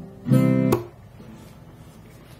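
Acoustic guitar sounding one final strummed chord about a third of a second in, cut off suddenly half a second later.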